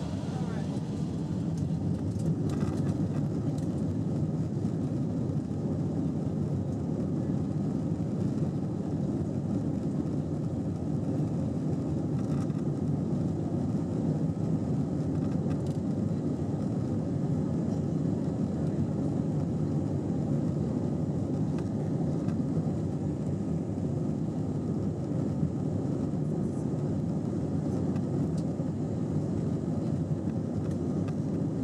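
Cabin noise of an Airbus A320-232 taxiing, heard from inside at a window seat over the wing: a steady low rumble from its two IAE V2500 turbofans at low thrust, with a faint whine. The noise rises slightly about a second in and then holds steady.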